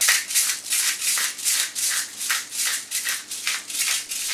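Hand-twisted pepper mill grinding peppercorns, a rhythmic gritty crunching of about three or four grinds a second.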